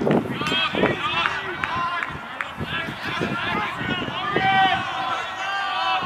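Several voices shouting and cheering over one another at a lacrosse game, with a sharp crack at the very start.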